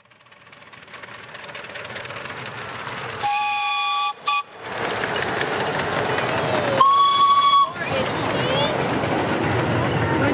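Miniature railway engine's whistle sounding two short blasts about three seconds apart, each under a second long, over the steady running noise and hiss of the train.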